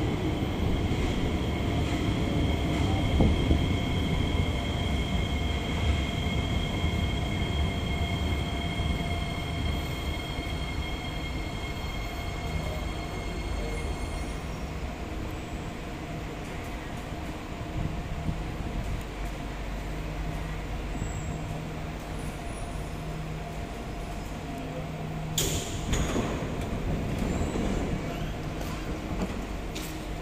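Kawasaki–CRRC Qingdao Sifang C151A metro train pulling in alongside the platform and slowing to a stop: wheel rumble with a steady electric traction whine that cuts off about halfway. It then stands with a low hum, and a short rush of noise comes about 25 seconds in as the doors open.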